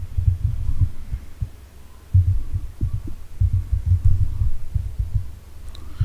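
Irregular runs of low, dull thuds from typing on a computer keyboard, with a lull of about a second between the runs.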